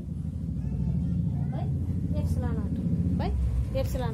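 Low, steady engine rumble, like a vehicle running nearby, growing louder across the few seconds. Short bits of a woman's voice come over it.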